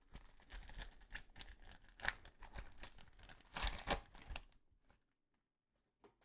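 Foil trading-card pack being torn open by gloved hands: faint crackling, crinkling and tearing of the wrapper, louder about two seconds in and again around four seconds in.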